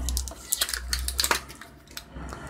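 Small hard plastic parts and fittings being handled: an irregular run of light clicks and rattles, busiest in the first second.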